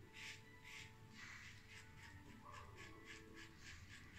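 Faint, quick strokes of a safety razor scraping stubble from a lathered neck: a short scratchy rasp about twice a second, coming quicker about halfway through.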